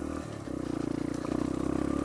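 Sinnis Apache 125cc motorcycle engine with an aftermarket D.E.P. exhaust, ridden on the move. It dips briefly near the start, then pulls louder and holds steady under throttle.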